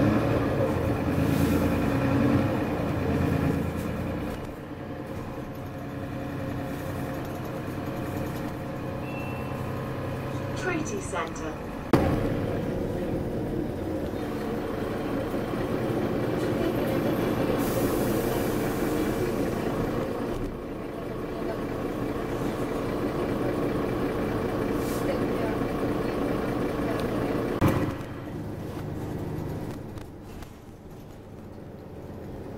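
Mercedes-Benz Citaro bus heard from inside the passenger saloon: a steady diesel engine drone with body rattles and road noise as it drives. A single sharp knock comes about twelve seconds in, and the sound drops away near the end.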